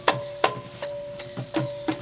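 Percussion of a live Nora (Manora) ensemble accompanying the dance: a quick run of sharp, clicking strikes, several a second, over sustained ringing metallic tones, with soft low drum beats under some strikes.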